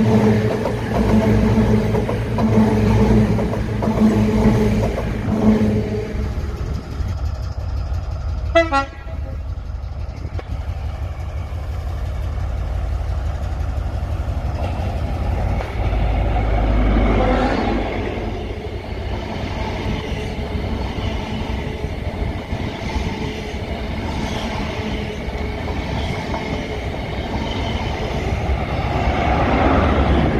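A CrossCountry Voyager diesel multiple unit running past with a steady engine drone for the first few seconds. It is followed by a CrossCountry HST with Class 43 power cars running along the platform, its diesel rumble swelling as the leading power car passes and again near the end as the rear power car goes by.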